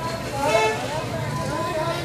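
Street hubbub: several people talking, over a steady rumble of traffic.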